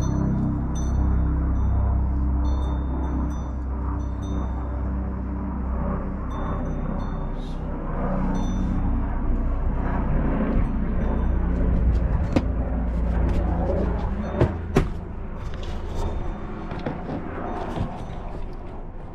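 Background music over a low rumble, fading in the second half, where a series of sharp clicks and knocks comes in.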